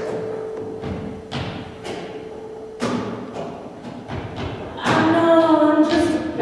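Experimental vocal music: a long held sung note that stops about halfway, with sharp knocks or thumps about once a second. Near the end, voices come in loudly on held notes.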